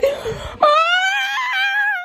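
A woman's voice: a short rough outcry, then one long, high, wavering wail that stops abruptly at the end.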